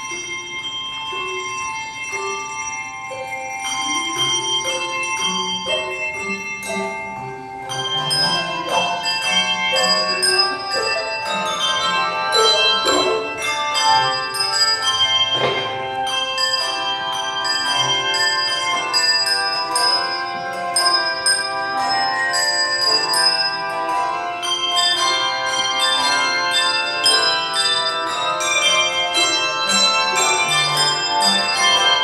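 Handbell choir ringing a piece: sparse single notes at first, then a fuller, louder texture of overlapping ringing tones from about eight seconds in.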